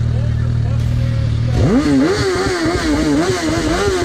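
Motorcycle engine idling steadily, then revved about one and a half seconds in, its pitch sweeping up and wavering up and down as the throttle is worked.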